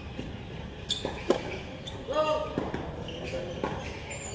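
Tennis ball bounced on a hard court a few times by the server before serving, with sharp knocks the strongest about a second in. A brief voiced call sounds about two seconds in.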